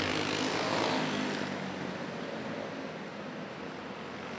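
Small engines of several winged dirt karts running together as a blended drone, slowly fading as the field eases off after the checkered flag.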